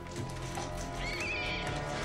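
Film score music with a short, wavering high squeal from a rat about a second in.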